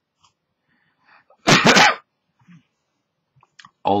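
A person sneezing once: a single short, loud burst about a second and a half in.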